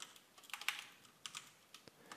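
Faint computer keyboard typing: a few separate keystrokes as a word is typed.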